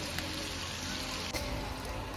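Diced bacon frying in a large aluminium pan over a wood fire: a steady, fairly quiet sizzle.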